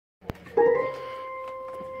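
Organ music starting: after a short click, a single held organ note comes in about half a second in, loudest at its onset, then sustained steadily.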